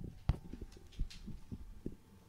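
Three soft, irregular low thumps with light rustling: choir members handling their music binders near the microphones.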